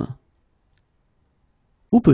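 A voice finishes one spoken French phrase at the very start and begins the next phrase near the end; between them is near silence broken by one faint click.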